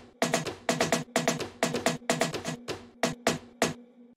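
Layered electronic percussion samples in a big room house drop loop, played back together: a quick, uneven rhythm of sharp, clicky hits over a faint low steady tone. The loop cuts off near the end.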